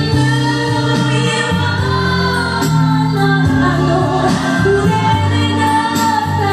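A woman singing through a handheld microphone over backing music, holding long, wavering notes.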